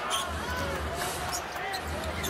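Basketball being dribbled on a hardwood court, with arena crowd noise behind it.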